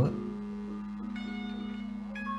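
A gamelan ensemble playing softly: low notes ring on steadily, and higher bell-like notes come in about a second in.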